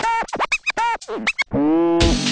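Record scratching: a run of quick back-and-forth scratches sweeping up and down in pitch, then one longer held scratch about one and a half seconds in.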